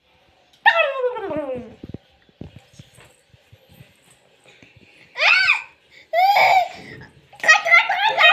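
High-pitched voices without words: a long cry that falls steeply in pitch about a second in, two short rising calls around five and six seconds in, then quick bursts of giggling near the end.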